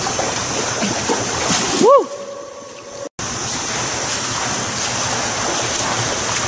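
Water splashing and churning from a swimmer's front crawl strokes close by, a steady wash of noise. About two seconds in, a short pitched sound rises and falls, the splashing goes muffled for about a second and cuts out briefly, then it resumes.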